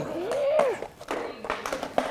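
A man's short exclamation that rises and falls in pitch. About a second in come several sharp clacks as a skateboard deck and wheels knock on concrete.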